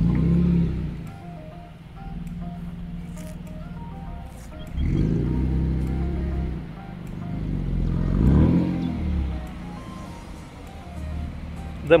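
Background music with a melody over the low running sound of a BMW E46 coupe's engine, which swells louder a few times, around the start, about five seconds in and again about eight seconds in.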